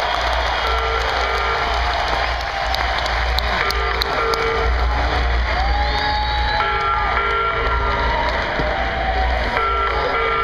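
A live rock band playing in an arena, heard from far back in the hall: held notes of a second or so over a heavy bass, with crowd noise underneath.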